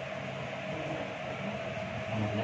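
Steady background noise with a faint, constant hum running through it.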